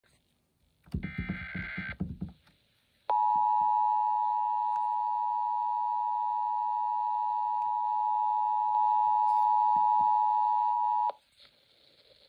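Emergency Alert System activation through a RadioShack FM radio's speaker: about a second in, a short burst of digital SAME header data tones, then after a brief pause the EAS two-tone attention signal, a steady dual tone near 1 kHz held for about eight seconds that cuts off suddenly near the end. It signals an emergency alert, here an Amber Alert, about to be read out.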